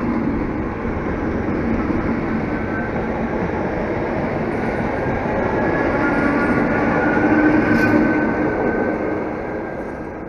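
ČSD class 451 electric multiple unit pulling away from the station and running past close by: wheels rolling on the rails under a faint steady electric whine. It grows louder to a peak about eight seconds in, with one sharp clack, then fades as the train moves off.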